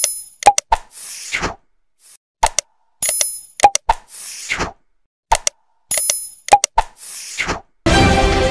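Animated like-and-subscribe sound effects: sharp mouse clicks, a pop and a bright bell-like ding, then a falling whoosh. The same set repeats three times, about every two and a half to three seconds.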